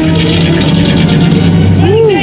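A film soundtrack played loud through cinema speakers: dramatic background score with a steady low held tone under a dense, busy layer of sound.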